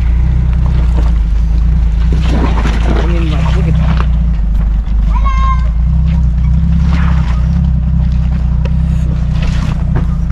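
Jeep Cherokee XJ's engine running at low revs as the 4x4 crawls over rocks and mud, a steady low rumble. Short children's calls sound over it, one high-pitched about five seconds in.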